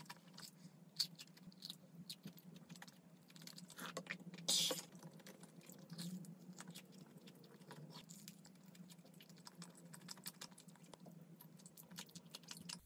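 Close-up eating sounds of a person chewing soft pastries (a fish-shaped bungeoppang and a pan-fried hotteok): many small wet mouth clicks and smacks. One brief, louder crackly noise comes about four and a half seconds in.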